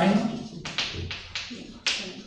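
Chalk writing on a blackboard: a quick run of about six sharp taps and short strokes as letters are written.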